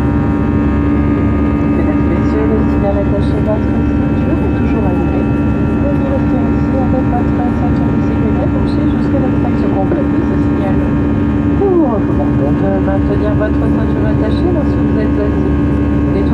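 Cabin noise of an Airbus A319 in flight: the steady drone of its engines and the airflow past the fuselage, with a low steady hum and several fainter steady tones above it.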